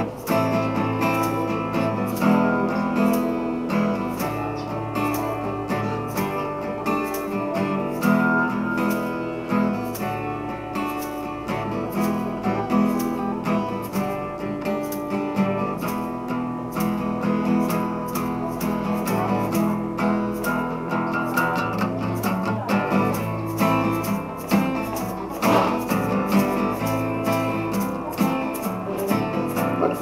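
Acoustic guitar strummed in a steady rhythm: an instrumental break in a live acoustic song, with no singing.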